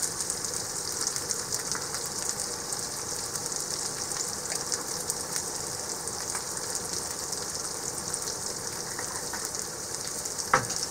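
Sliced red onions frying in oil in a cast iron skillet: a steady sizzling hiss with scattered small crackles.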